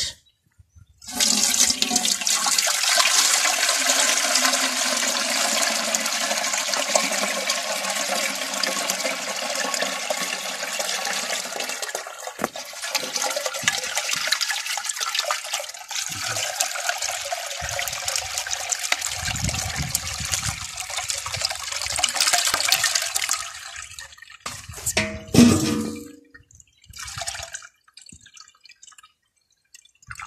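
Liquid from fermented banana fruit and peels poured from a large aluminium basin through a cloth sieve into a bucket: a steady splashing stream that stops about 23 seconds in, followed by a short louder sound and a few drips.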